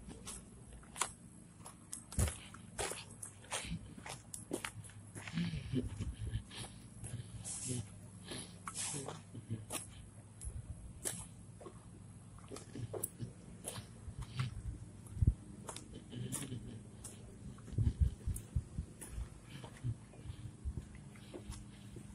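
Dog walk on a leash along a paved road: scattered light clicks and soft thumps of footsteps and of a hand-held phone being carried, over a faint steady low hum.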